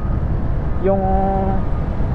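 Steady low rumble of wind and road noise while riding a Honda Click 125i scooter at about 30 km/h. Its single-cylinder engine and exhaust run quietly under the wind rumble.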